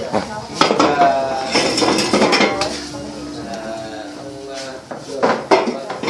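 Dishes and cups clinking in short sharp knocks, louder twice near the end, while several people talk in the background.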